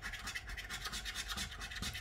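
A coin scraping the silver coating off a paper scratch card in quick, repeated back-and-forth strokes.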